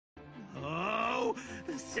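A dubbed anime character's voice groaning in strain, its pitch rising and then falling, over steady background music. Speech begins near the end.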